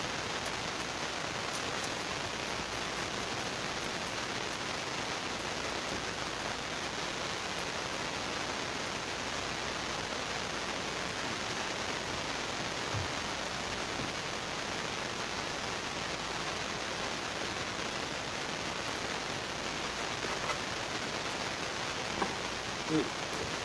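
A steady, even rushing hiss with no breaks, like heavy rain, with a faint tick or two about two-thirds of the way through.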